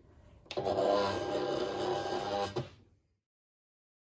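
Silhouette Cameo cutting machine's motor and rollers running as it draws the cutting mat in. It is a steady whir that starts suddenly about half a second in and stops abruptly near three seconds in.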